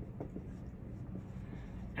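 Dry-erase marker writing on a whiteboard: faint short strokes and taps of the felt tip as a word is written out, over a low steady room hum.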